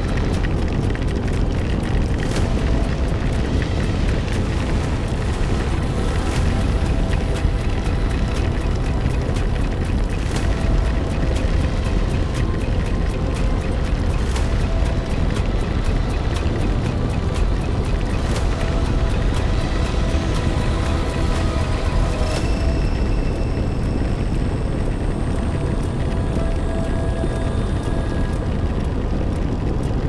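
Background music over the steady, heavy low rumble of wind buffeting a motorcycle-mounted camera's microphone on a ride in the rain, with a few sharp taps.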